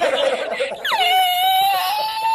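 A man's uncontrollable laughter: choppy bursts at first, then, about a second in, a long, high-pitched wheezing note held steady.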